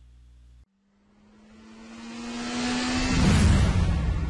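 Intro sound effect: a rushing whoosh, like a jet passing, that swells over about two seconds with a faint slowly rising tone and peaks in a loud low rumble near the end. Before it, a faint steady hum cuts off under a second in.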